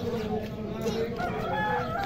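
A rooster crowing: one long crow that climbs in pitch and is held near its end.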